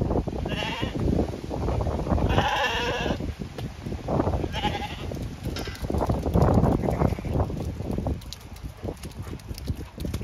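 Zwartbles sheep bleating, four short wavering bleats in the first six seconds, over a steady low rumble of wind on the microphone.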